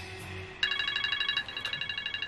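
Mobile phone ringtone starting abruptly about half a second in: a fast-pulsing electronic trill of several high tones, with a brief break before it rings again.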